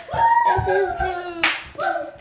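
High-pitched children's voices in drawn-out calls, with one sharp hand clap about one and a half seconds in.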